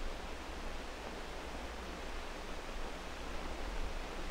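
Steady hiss with a low hum underneath: the background noise of an old 16 mm film soundtrack.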